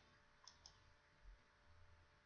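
Two faint clicks of a computer mouse button close together, about half a second in, against near silence.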